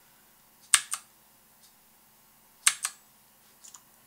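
Sharp clicks from someone working a computer at a desk: a quick double click about a second in, another just before three seconds, and a fainter pair near the end.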